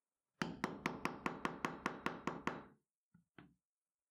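A mallet tapping a metal hole punch about eleven times in quick, even succession, around five taps a second, driving it through a leather strap into a wooden block. Two faint clicks follow near the end.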